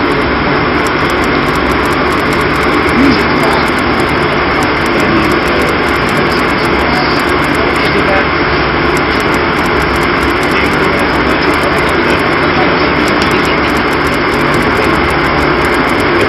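Steady, loud drone of a ship's machinery: an even rushing noise with a low hum underneath, unbroken throughout.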